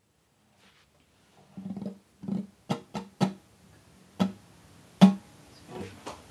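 Acoustic guitar: a handful of separate plucked notes and short strums, irregularly spaced, starting about a second and a half in after near silence. The loudest comes about five seconds in.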